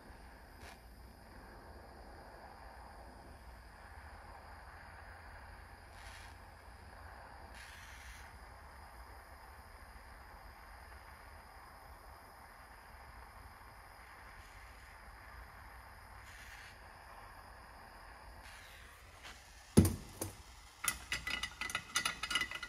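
Propane torch flame hissing steadily as it heats the aluminum clutch sheave to loosen a pressed-in roller pin. The hiss stops a few seconds before the end. A sharp knock follows, then metal tools clinking.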